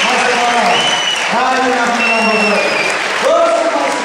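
Audience applause, with a man's amplified voice coming through the hall's PA in drawn-out phrases of about a second each.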